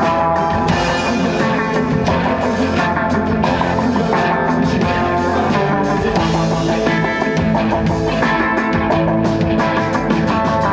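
Live psychedelic indie rock band playing loud and steady: electric guitars over a drum kit.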